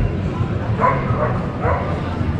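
A dog barks twice, two short barks just under a second apart, over the chatter of people on a busy street.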